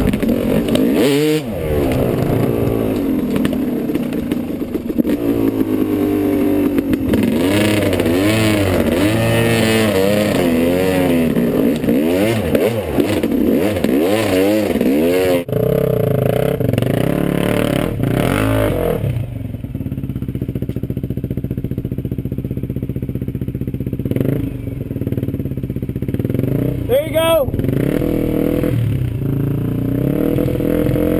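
Dirt bike engines on a steep rocky trail climb, first heard up close, revving up and down repeatedly under constant throttle changes. After a sudden change about halfway through, an engine runs lower and steadier, with one sharp rev near the end.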